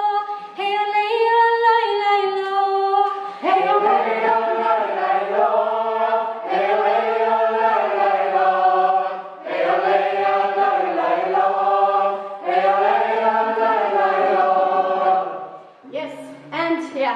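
A Sámi joik sung without accompaniment on wordless syllables. One woman's voice leads alone at first; about three and a half seconds in, a small group of women's and men's voices joins in unison. They sing repeated phrases of about three seconds each, with short breaths between.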